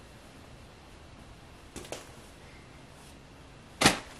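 Quiet room tone with faint rustles of handled clothing and plastic packaging, then a brief, loud swish just before the end as a folded T-shirt is laid down on a plastic-bagged jersey.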